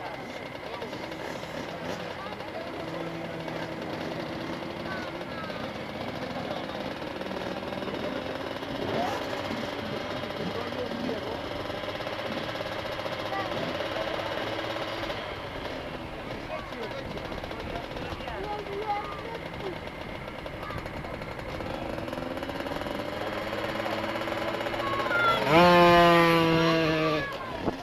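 Small two-stroke minibike engines running at idle with occasional throttle blips, then one bike revving hard, its pitch sweeping up sharply, as it pulls away near the end.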